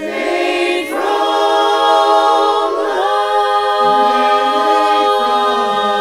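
Mixed a cappella chorus singing sustained chords in close harmony. The chord shifts about a second in and again about three seconds in.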